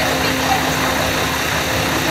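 A vehicle engine idling steadily under a loud, even hiss.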